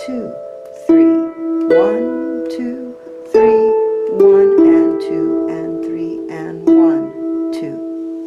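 Lever harp playing a slow waltz melody in E minor: single plucked notes over a bass line, each note ringing on into the next. The notes fade away near the end.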